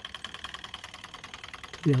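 Small model Stirling engine running: a rapid, even ticking of about ten beats a second from its crank and pistons, with a faint steady high tone.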